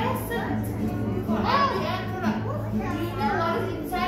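Several children's voices talking and calling out, high-pitched and overlapping, over a steady low hum.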